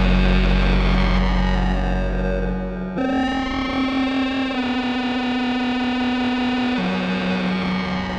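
ElectroComp EML 101 analog synthesizer sounding one sustained, buzzy drone while its panel knobs are turned. About three seconds in the deep bass drops out and the pitch steps up; a little before the end it steps back down.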